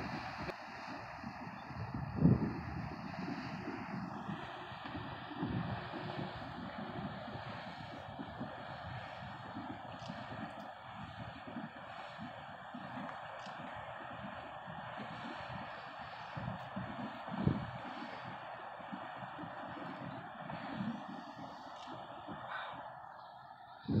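Wind buffeting the microphone in irregular low gusts, two of them sharper than the rest, over a steady background rush.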